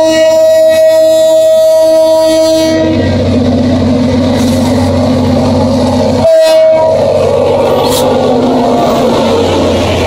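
Diesel freight locomotive's air horn sounding a long, steady blast that ends about three seconds in. The locomotive then passes close by with its engine working hard at full throttle, a heavy rumble with wheels on the rails, and gives a short horn toot about six seconds in.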